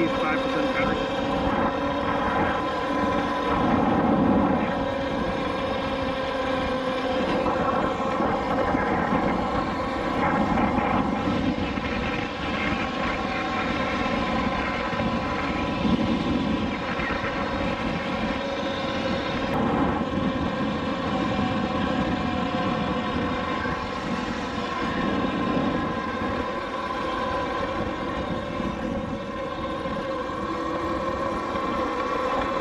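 Talaria Sting electric dirt bike under way: a steady whine from its electric motor and drivetrain, drifting slightly in pitch with speed, over fluttering wind rush on the microphone.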